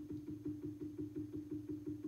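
Electronic expansion valve's gear-driven stepper motor being pulsed against its fully closed stop: a steady hum with an even rhythmic pulse, about six a second. This is the sound of the valve at 100% closed, where the gears can no longer turn.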